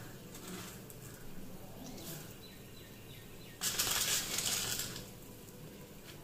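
A rustling rattle of dry whole spices being handled, one burst of about a second and a half near the middle, over faint room tone.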